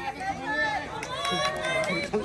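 Spectators' voices: overlapping chatter and calls from a small crowd, with drawn-out shouts starting about a second in.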